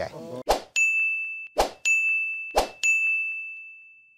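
Three whoosh-and-ding sound effects about a second apart, each a quick swoosh followed by a high ringing chime that slowly decays; the last chime dies away near the end.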